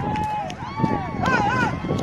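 Several people shouting and calling out over one another in high, strained voices.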